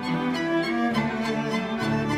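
String quartet playing softly: the first violin's short grace-noted notes over running second-violin figures, a held viola note and a cello bass line.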